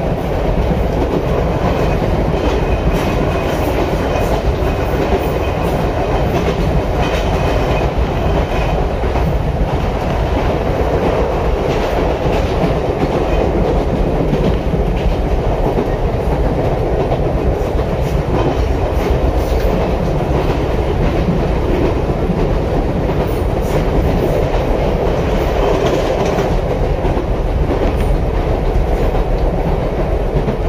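Ichibata Electric Railway electric train running at steady speed, heard from on board: a continuous rumble of wheels on rails with a few faint clicks.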